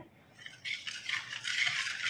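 A wire whisk stirring and scraping in a pot, starting about half a second in, as milk is whisked into dry cornstarch and sugar to keep lumps from forming.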